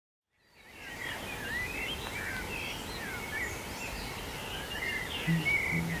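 Outdoor ambience fading in out of silence: many small birds chirping and twittering over a steady background hiss.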